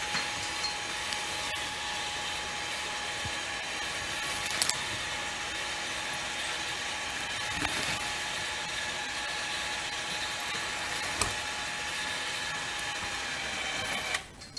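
Winch on a horse-drawn logging cart running steadily with an even whine, hoisting the chained end of a log up off the snow, and cutting off abruptly at the very end.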